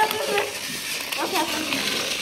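Battery-powered Thomas & Friends TrackMaster toy engine, Stephen, whirring as it climbs a plastic hill track, its motor and gears giving a steady rough buzz. Faint voices murmur underneath.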